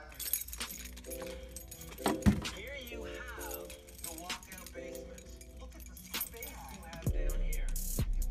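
A ring of keys jangling and clicking against the metal cabinet of a bulk candy vending machine as it is turned around and unlocked, over quiet background music. A louder music track with a deep bass comes in near the end.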